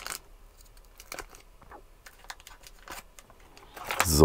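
A small wrapper being torn open and handled to take out a mosquito-repellent refill pad: faint crinkling with a few small clicks about a second in and again near the end.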